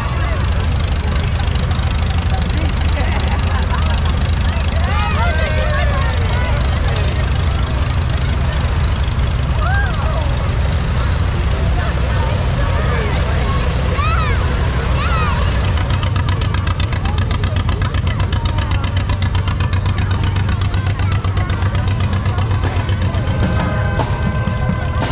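Engines of slow-moving parade vehicles passing close by, a towing truck and then antique farm tractors, making a steady low rumble. Scattered children's shouts and crowd voices rise over it.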